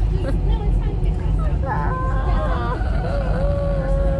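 A baby crying on an airliner: a wavering cry about halfway through, then a long held wail near the end, over the steady low drone of the cabin.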